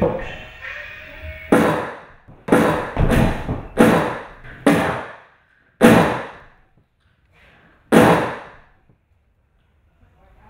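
A series of about eight sharp, loud bangs at irregular intervals, each dying away over half a second to a second in a large room; the last two, a couple of seconds apart, are the loudest.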